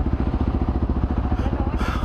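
Motorcycle engine idling at a standstill, a steady, quick, even low pulsing.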